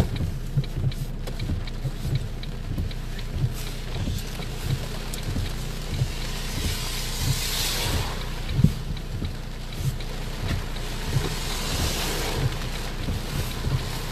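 Cloudburst rain heard from inside a moving car: a steady rushing of rain and tyres on a wet road, with many irregular low thuds of heavy drops hitting the windscreen. The rushing hiss swells twice, about halfway through and again a couple of seconds later.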